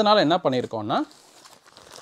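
A man's voice for about the first second, then a plastic packaging bag crinkling faintly as it is picked up and handled.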